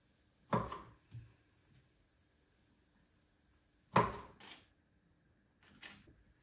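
A few separate knocks of a kitchen knife on a plastic cutting board while cherry tomatoes are sliced, the loudest about four seconds in, with faint clicks near the end.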